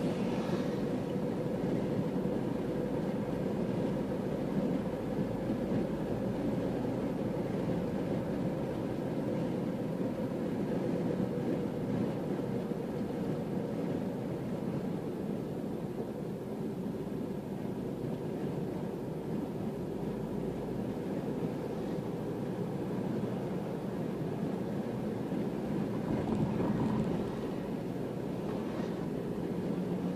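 Steady road and engine noise heard from inside a car cruising along a highway, with a brief swell near the end.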